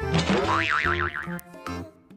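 Upbeat background music with a cartoon boing sound effect over it: a rising twang that wobbles quickly for about a second. The music drops out near the end.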